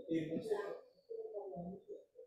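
A person's voice murmuring indistinctly in short, low, muffled bits, with no clear words.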